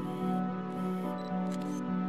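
Slow background music with sustained notes, overlaid by camera shutter sound effects: three short bursts of clicking and whirring within the first two seconds.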